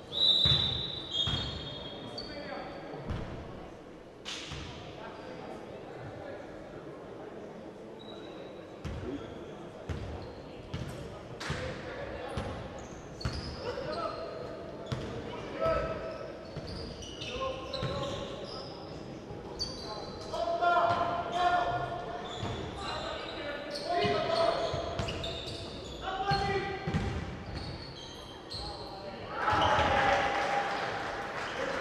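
Basketball game sounds in a large gym hall: the ball bouncing on the wooden court in a run of short knocks, with players' shouts and calls, which grow busier in the second half.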